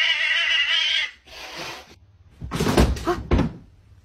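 Domestic cat yowling, a long drawn-out call that stops about a second in, as it squares off against a dog. Then, after a short lull, a cluster of heavy thumps.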